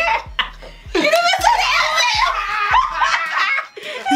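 A group of adults laughing hard together. It eases for a moment near the start, then swells into a loud burst of overlapping laughter and squeals about a second in, which drops off just before the end.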